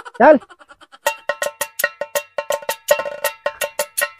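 A background music track opening with quick, regular strikes on a ringing metal bell-like percussion, about five a second, after a single spoken word.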